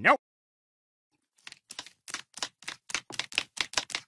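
A dog's long, overgrown claws clicking on a hard kitchen floor: a quick run of clicks, about five a second, that starts after a second and a half of silence and grows louder.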